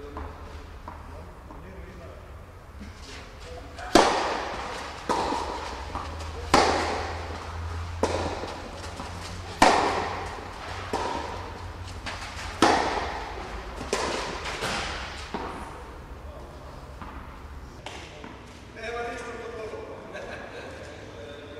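Tennis rally: a ball struck by rackets and bouncing on the court, about a dozen sharp hits from about four seconds in until near the three-quarter mark. The loudest strikes come roughly every three seconds, and each one echoes in the large indoor hall.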